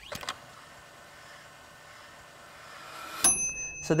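An editing sound effect: a soft whoosh swells for about three seconds, then ends in a bright, ringing, bell-like ding.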